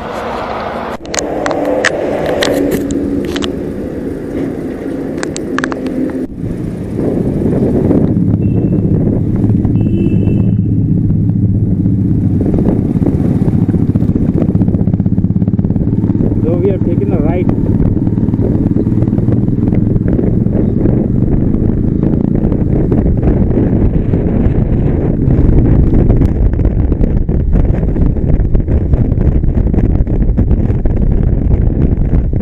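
Motorcycle engine running while riding, together with wind and road noise. The engine is steady at first, then the sound gets louder about six seconds in as the bike picks up speed, and holds there. There are brief high tones around ten seconds and again around seventeen seconds.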